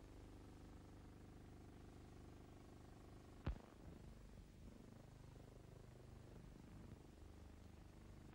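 Near silence: the low hum and hiss of an old optical film soundtrack, with a single sharp click about three and a half seconds in, typical of a film splice.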